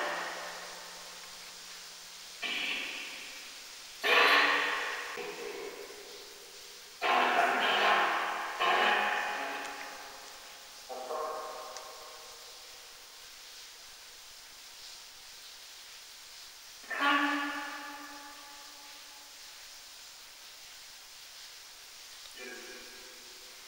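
Geobox spirit box putting out about six short bursts of garbled, voice-like sound heavy with echo, each starting suddenly and fading away, with quieter gaps between. The ghost hunter captions them as spirit replies such as "I'll try".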